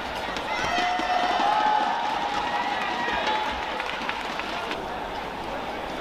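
Badminton rally: sharp shuttlecock hits and squeaks of players' shoes on the court, over steady arena crowd noise.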